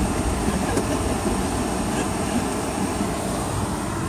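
Steady engine and road noise heard from inside the cabin of a Toyota van as it drives in traffic.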